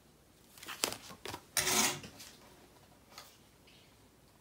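Paper and cardstock being handled on a craft table: a cluster of short rustles and scrapes about a second in, the loudest a brief scrape about one and a half seconds in, then a few faint ticks.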